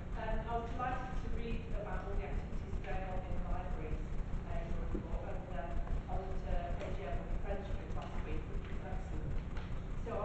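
Speech only: a person speaking over a microphone in a large chamber, the voice fairly faint, over a steady low rumble.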